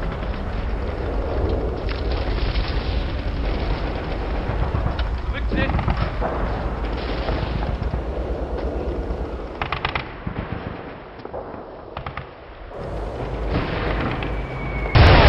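War-film battle soundtrack: continuous gunfire with artillery shell blasts, some voices among it. A quick rattle of shots comes just before ten seconds in, then it drops quieter for about two seconds and builds again near the end.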